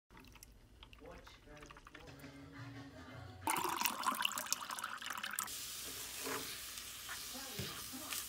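A coffee maker quietly dispensing coffee into a mug, then a loud splashing pour of water into a glass about three and a half seconds in. A steady hiss follows from about five and a half seconds, with eggs cooking in a steel pan.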